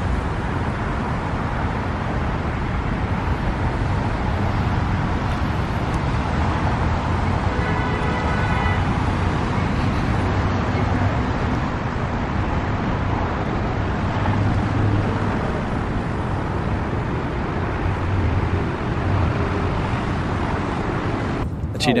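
Steady low rumble of city traffic, with a faint short pitched sound about eight seconds in.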